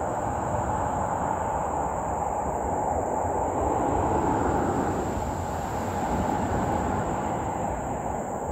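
A steady low rumbling noise swells slightly about four seconds in. Under it runs a steady high-pitched drone of insects.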